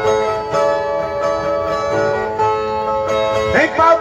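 Two violas playing a plucked instrumental interlude between verses of a Northeastern Brazilian cantoria, repeated notes in a steady rhythm. A man's singing voice comes in near the end.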